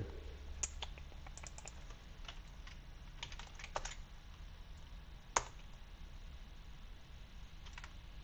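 Computer keyboard typing: scattered keystrokes in short runs, with one louder click about five seconds in, over a faint steady low hum.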